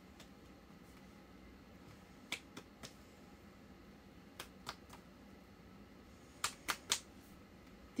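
Faint hand sounds of a silent body-percussion rhythm: short sharp clicks in three groups of three, spaced about two seconds apart, over quiet room tone.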